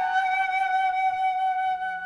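Solo concert flute holding one long, steady note after a short falling run, softening near the end.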